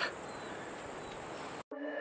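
Steady high-pitched insect buzz over faint open-air ambience. It cuts off abruptly near the end, and soft ambient electronic music begins to fade in.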